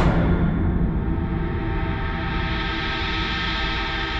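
Dramatic background-score sting: a gong-like crash that rings on with many steady overtones over a low rumble, fading only slightly.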